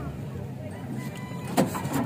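Small boat engine on an outrigger bangka being pull-started: one sharp pull of the starter cord about one and a half seconds in, over a low steady hum.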